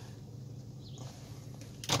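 A car idling, heard from inside the cabin as a low steady hum. A man's voice breaks in just before the end.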